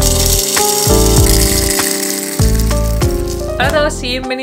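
Whole coffee beans poured from a bag into a grinder's plastic hopper, a rattling hiss that fades out after about two seconds, over background music with a deep sliding bass beat. A woman starts talking near the end.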